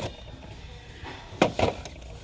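A couple of sharp knocks and clicks about a second and a half in, from a boxed diecast model truck being handled against the store shelf, over faint background music.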